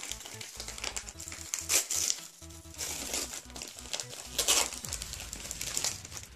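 Gift-wrapping paper crinkling and rustling in irregular bursts as a small wrapped present is unwrapped by hand.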